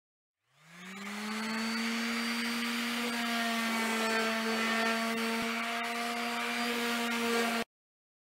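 Corded random orbital sander spinning up about half a second in, its pitch rising, then running steadily with a hum and a hiss of the sanding pad on the board. The sound cuts off suddenly near the end.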